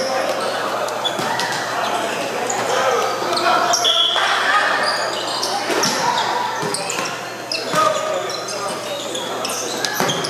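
Volleyball play in a reverberant gymnasium: a ball being hit and bouncing on the hardwood floor, with sharp hits about six seconds in and again near eight seconds, over the steady echoing chatter of many people.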